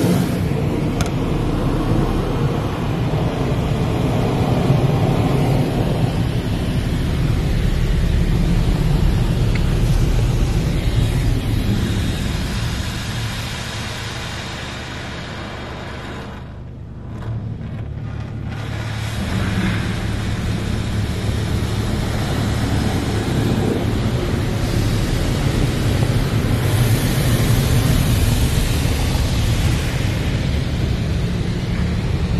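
Belanger Vector in-bay automatic car wash spraying water over the car, heard from inside the cabin: a steady hiss and drumming of spray over a low machine hum. It fades for a few seconds around the middle as the spray reaches the back of the car, then builds again.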